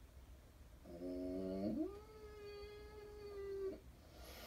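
A cat yowling: one long call, low for about a second, then sliding up in pitch and held for about two seconds before it stops.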